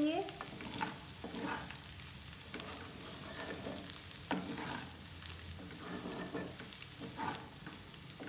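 A spatula stirring cooked vermicelli round and round in a nonstick kadai on a lit stove: irregular soft scrapes and rustles of the noodles, over a faint sizzle.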